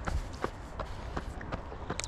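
A runner's footsteps on an asphalt path, an even patter of about three strides a second.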